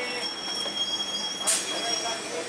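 EMU local train's brakes or wheels squealing with a steady, high-pitched tone as the train comes to a stop at the platform. A short, sharp hiss about one and a half seconds in.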